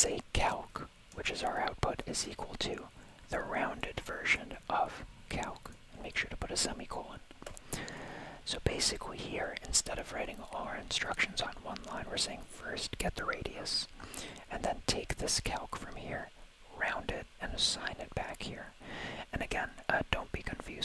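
Whispered speech, with scattered light keyboard clicks as a line of code is typed.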